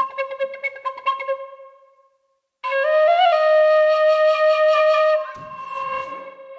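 Sampled Irish penny whistle (Soundiron Iron Pack 11 library) played from a keyboard: a quick run of ornamented notes dies away into reverb, then after a short break a long held note with a little grace-note flip near its start. Near the end a softer ambient pad with sliding tones takes over.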